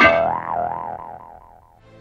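A cartoon 'boing' sound effect: a sudden twang whose pitch wobbles up and down about four times a second as it fades away over a second and a half.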